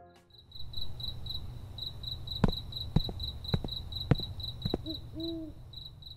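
Night ambience effect: crickets chirping in a steady pulsing trill, with a few sharp clicks in the middle and an owl hooting twice near the end.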